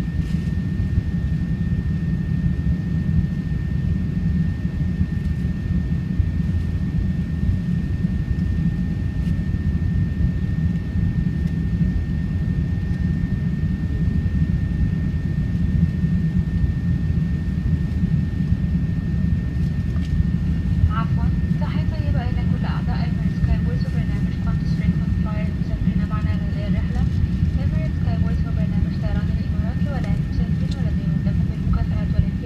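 Steady low roar of an Airbus A380-800's four jet engines and airflow heard inside the passenger cabin during the climb-out, with a thin steady high tone throughout. Faint voices come in about two-thirds of the way through.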